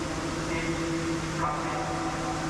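Steady hum of heavy machinery in an earthquake-simulator test hall, with several held tones. The upper tones shift slightly about a second and a half in.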